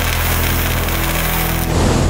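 Sound effect of a lit fuse fizzing over a steady low rumble. Near the end a louder whoosh takes over.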